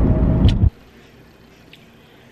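Car interior road noise: a loud, steady low rumble while driving, which cuts off abruptly less than a second in, leaving quiet room tone.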